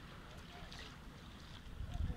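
Wind buffeting the microphone in an uneven low rumble, with faint distant voices.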